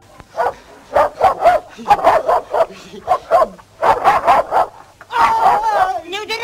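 A dog barking repeatedly in quick runs of short barks.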